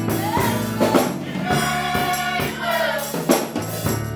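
Gospel choir singing, accompanied by electric keyboard, a drum kit and a jingling tambourine.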